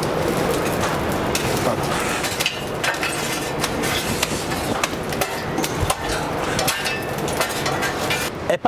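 Burning lump charcoal in a grill firebox being stirred and shovelled with metal tools: a steady rush of fire with many sharp crackles, pops and clinks of coals and metal throughout.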